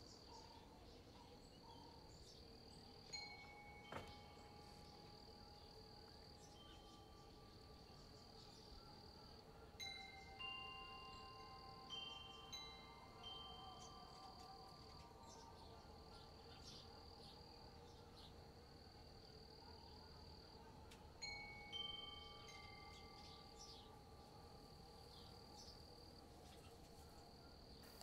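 Faint wind chimes ringing in a few scattered clusters of long, slowly fading notes at different pitches: a few seconds in, again around ten to fourteen seconds, and past twenty seconds. A steady high insect drone runs under them and breaks off now and then.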